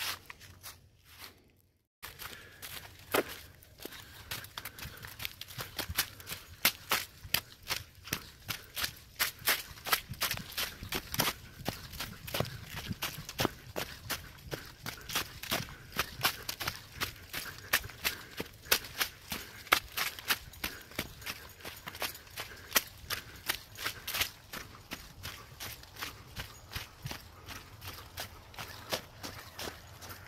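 Quick, irregular footsteps crunching through dry fallen leaves, several steps a second, starting about two seconds in after a moment of near silence.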